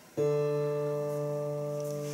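Squier Bullet Stratocaster's open D string plucked once just after the start and left ringing, slowly fading, as it is checked against a tuner for intonation.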